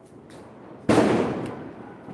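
A single firecracker bang about a second in, sharp at the start, then dying away in an echo over most of a second.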